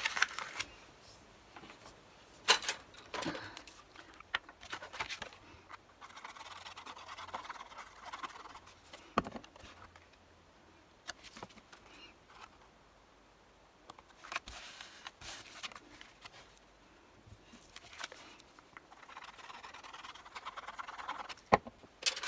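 Card stock being handled and pressed together on a cutting mat: sheets sliding and rubbing in soft patches of a few seconds, with scattered light taps and clicks.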